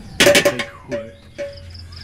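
Insects chirping steadily: a constant high whine with pulsed high chirps. About a quarter second in, a sudden loud rustle lasts about half a second, followed by brief voice sounds.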